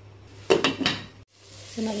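A few quick metallic clinks and clatters of cookware against a nonstick pot about half a second in. After a brief break, tomato masala sizzles steadily in oil in the pot.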